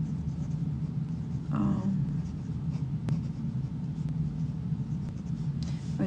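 Pen writing on paper as a short note is jotted down, over a steady low hum. A brief hummed voice sound comes about a second and a half in, and a single click near the middle.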